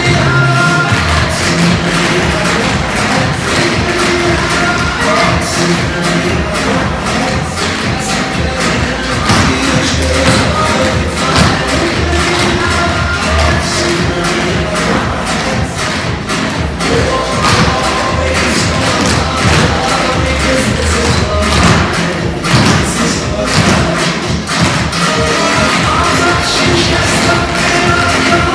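Recorded dance music playing loudly, with a group of tap shoes striking the floor in quick rhythmic clusters of taps and stamps over it.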